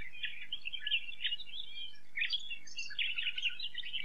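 Small birds chirping and twittering in a steady, busy flurry of short quick calls.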